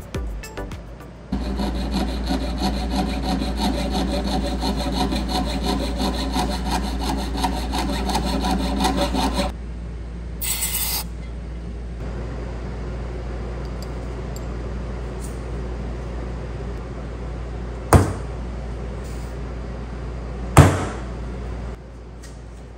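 Fast, steady rasping strokes of a metalworking hand tool on silver for the first several seconds. Near the end come two sharp metallic hammer blows, a couple of seconds apart, of a hammer striking a design stamp into a silver strip on a steel bench block.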